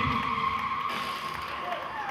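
A voice through the hall's PA trails off in the first moment, while a steady, high electronic tone is held over a low murmur, as the DJ brings in the next track.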